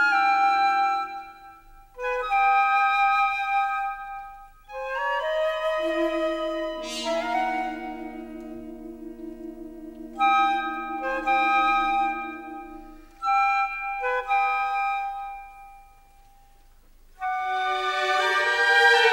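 Orchestral film-library music: short woodwind phrases broken by brief pauses. In the middle a long, low wavering note is held under higher lines. The music drops almost to silence for a moment before the ensemble comes back in near the end.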